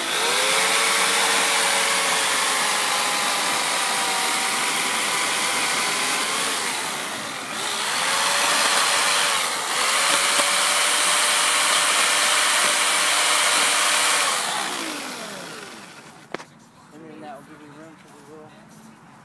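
Corded electric chainsaw running, its motor whine sagging in pitch twice near the middle as it bites into the lower branches and base of a Christmas tree trunk. It winds down and stops about two seconds before the end, followed by a single click.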